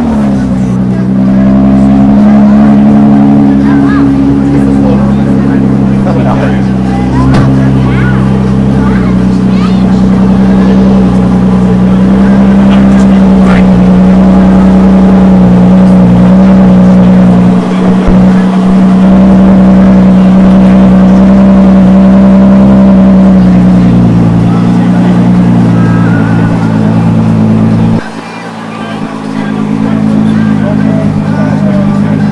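Ford GT's twin-turbo V6 running loudly at a steady, constant pitch. The note dips briefly about two-thirds of the way through and drops off sharply near the end.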